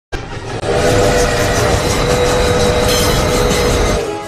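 Train whistle blowing one long blast of several pitches sounded together over the rumble of a moving train, starting abruptly with a brief break about half a second in.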